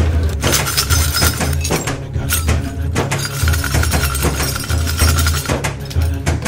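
Broken bell-metal scrap pieces clinking and chinking against each other as they are dropped and packed by hand into a clay crucible, ready for melting. Background music plays under it.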